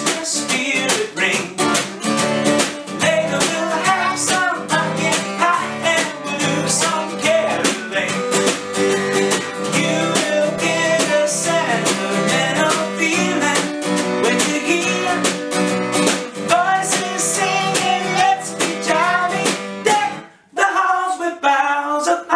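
Live band music of strummed acoustic guitars and a snare drum at a lively rock-and-roll beat. The music stops abruptly about twenty seconds in and starts again half a second later.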